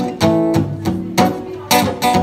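Acoustic guitar strummed in chords, several strokes across the two seconds, each chord ringing on until the next.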